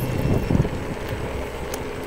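Wind rumbling on the microphone, a low steady noise that slowly gets quieter.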